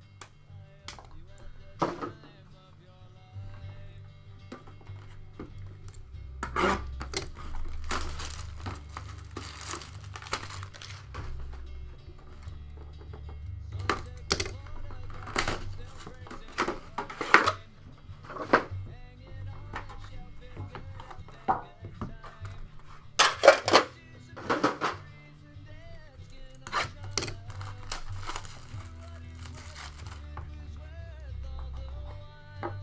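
Background music with a steady low beat, under the crinkling and tearing of plastic shrink wrap and the knocks and scrapes of a cardboard trading-card box being handled on a tabletop. The handling noises come in clusters, loudest a little after the middle.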